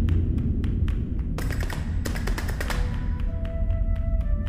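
Sword blades clashing in a quick flurry of ringing metallic strikes about one and a half seconds in, over a low steady rumble and a run of sharp taps. Soft sustained music notes begin near the end.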